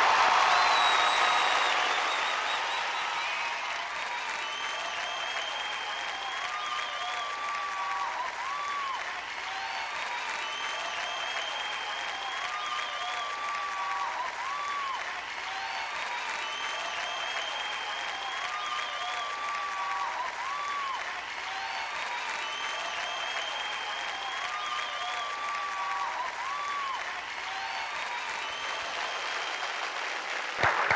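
Studio audience applauding steadily, loudest in the first couple of seconds, with a short music phrase repeating faintly about every six seconds under the clapping.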